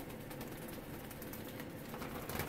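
Ringneck doves cooing faintly in the background, under a steady run of fast, faint clicks.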